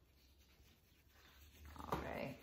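Faint scrubbing of a toothbrush working a wet paste of dish soap, baking soda and hydrogen peroxide into a shirt's fabric in small circles. A short, sharper noise comes near the end.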